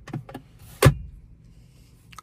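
Hand handling a car's centre armrest: a few light clicks, then one sharp click a little under a second in.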